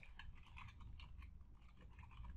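Faint, rapid typing on a computer keyboard.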